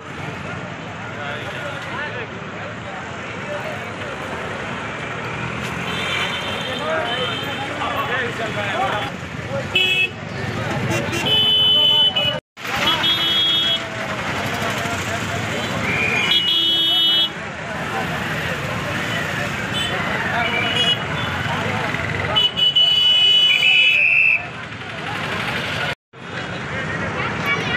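Busy street traffic with vehicle horns tooting briefly again and again, over a crowd of voices talking.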